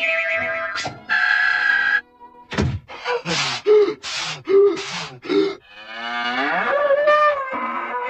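Cartoon sound effects: a run of short comic cries, then a long cow moo in the second half, with music.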